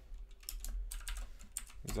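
Typing on a computer keyboard: a quick, irregular run of keystroke clicks, several a second, over a steady low hum.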